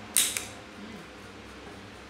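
A straw broom scraping briefly across a tiled floor, twice in quick succession just after the start, the first the louder.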